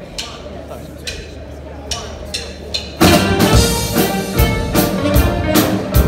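A few sharp wooden clicks counting off the tempo over a low amplifier hum, then about three seconds in a live R&B band comes in loud all at once: drum kit, upright bass, electric guitar, keyboard and saxophone playing a steady beat.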